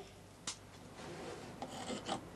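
Knife blade scraping at the soot-crusted wall inside a steam locomotive's firebox: faint scratching strokes, with a short click about half a second in.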